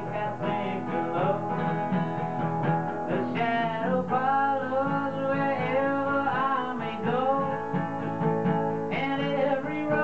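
A man singing a song live to strummed acoustic guitar.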